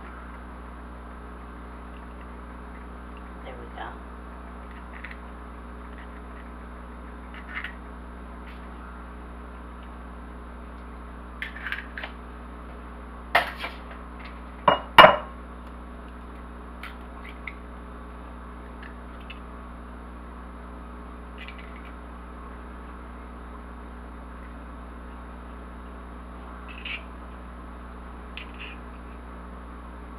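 A hen's egg tapped sharply against the rim of a glass mixing bowl and cracked open by hand, a cluster of loud clicks about halfway through. Smaller clinks of eggshell on glass come here and there as the egg is separated, over a steady low hum.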